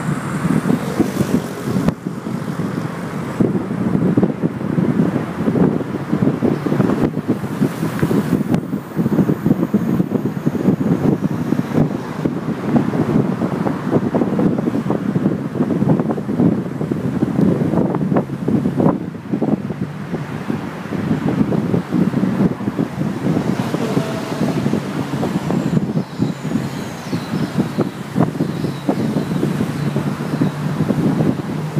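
Wind buffeting the microphone from a moving vehicle, mixed with road and traffic noise: a continuous loud, low rumble.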